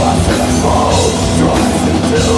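A black metal band playing live, loud and dense: distorted electric guitars, bass guitar, and a drum kit with cymbals crashing.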